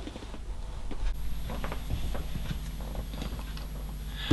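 Light handling noises: scattered soft taps and clicks of hands moving things on a workbench. About a second in, the background changes to a low hum with a faint steady high-pitched whine.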